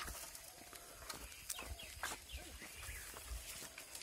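Faint outdoor ambience with a few short animal calls, of the kind made by farm fowl, about midway. A sharp click comes at the very start, with lighter clicks scattered through.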